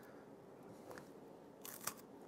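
Mostly quiet, then a short crunch near the end as a dry, brittle cracker spread with deviled ham is bitten into.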